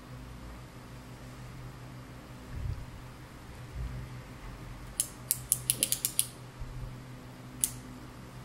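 A twist-up lipstick pencil clicking: a quick run of about eight sharp clicks over a little more than a second, then a single click shortly after.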